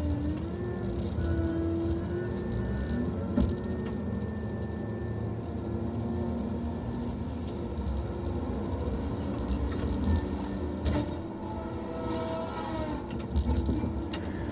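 Tigercat LX870D tracked feller buncher heard from inside its cab: the diesel engine drones steadily under a hydraulic whine that shifts in pitch as the boom and felling head are worked, with a couple of faint knocks.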